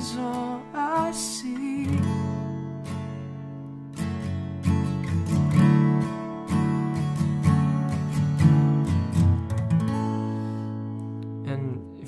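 Steel-string acoustic guitar, capoed at the second fret, strummed through chorus chords in an uneven pattern. The last chord is left ringing and dies away near the end.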